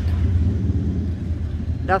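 Harley-Davidson motorcycle's V-twin engine idling with a deep, steady puttering rumble.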